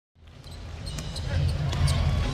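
Basketball arena game sound fading in from silence and growing louder: a steady crowd rumble in a large hall, with a few sharp knocks of the ball and players on the hardwood court.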